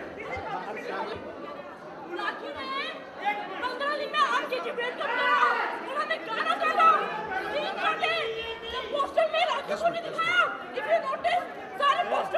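Several voices talking over one another in a heated argument, with a woman's voice raised above the crowd's chatter.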